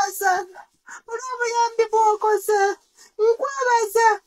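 A woman speaking in a high, strained, tearful voice, her words drawn out in long held tones like a lament, with two short pauses.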